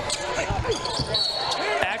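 Live basketball game on a hardwood court: the ball bouncing, sneakers squeaking and crowd noise, with a short high whistle about a second in as a foul is called on a drive to the basket.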